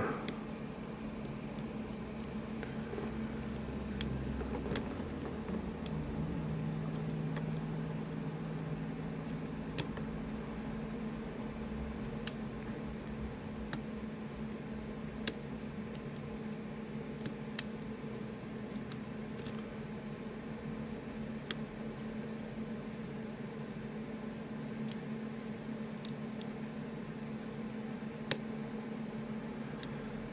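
Sporadic light metallic clicks of a pick and tension tool inside an ASSA Ruko Flexcore lock cylinder, about ten spread over the stretch, as tension is eased to let an overset pin back down and reset the lock. A steady low hum runs underneath.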